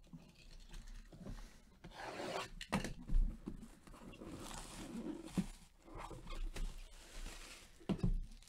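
Hands rubbing and tearing plastic shrink-wrap off a cardboard trading-card box: irregular rustling and scraping in bursts, with a few sharp clicks.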